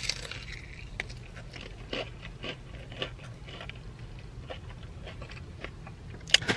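A person biting into and chewing crispy Nashville hot fried chicken, with scattered crisp crunches from the fried coating, the firmest bite right at the start.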